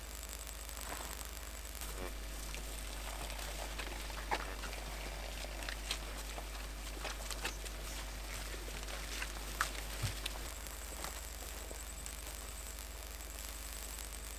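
A herd of dairy cattle crowded at a fence: a faint steady splashing of cows urinating, with scattered small clicks and rustles from the animals.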